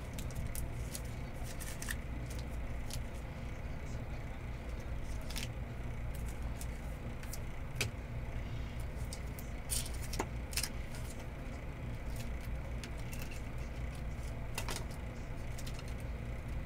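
Trading cards being handled by hand: scattered light clicks and flicks of card stock at irregular moments over a steady low hum.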